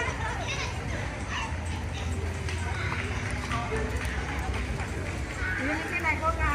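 People talking at a busy outdoor street market, with a steady low rumble beneath the voices.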